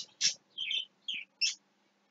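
A small bird gives four or five short, high chirps in quick succession, some sweeping downward in pitch, within the first second and a half.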